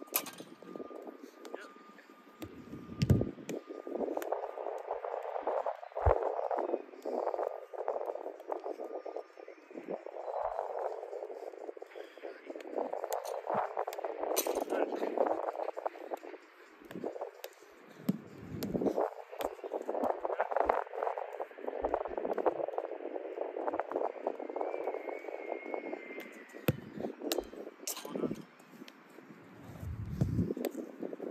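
Soccer balls being kicked on artificial turf during a passing and dribbling drill: sharp thuds every few seconds, the loudest about three seconds in, over a continuous rushing background noise.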